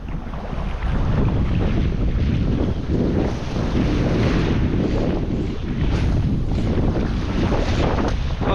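Steady wind buffeting the microphone, with small waves washing onto a sandy beach.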